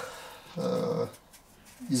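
A man's voice holding a short drawn-out hesitation sound, about half a second long, a little after the start.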